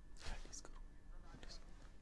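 Faint, indistinct voices in the background, with a few short hissing sounds.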